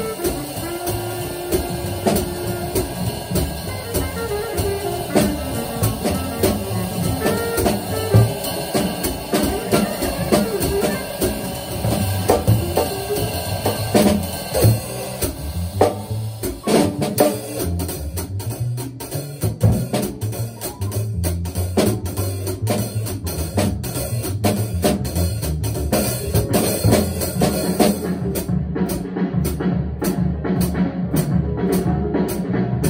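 Jazz drum kit played with sticks, cymbals and snare keeping time along with a recorded jazz tune that plays softly from a speaker. The record's pitched horn and bass lines sit faintly under the drums.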